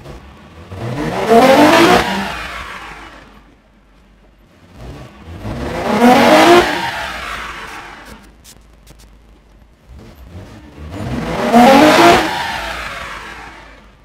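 Toyota MR2's 3.5-litre 2GR-FE V6 revving hard on a chassis dyno three times, each climb in pitch lasting about a second and a half before dying away. The engine is running 2GR-FKS ignition coils.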